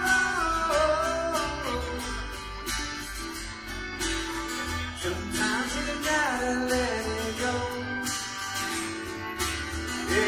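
A string band playing live: strummed acoustic guitar, upright bass and bowed fiddle together in a continuous melodic tune.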